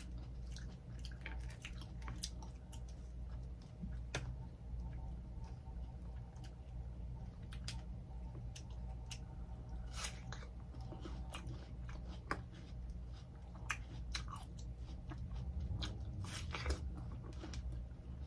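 Close-miked chewing of fresh fruit and bites into watermelon slices: many short, wet crunches and mouth clicks at irregular intervals, over a steady low hum.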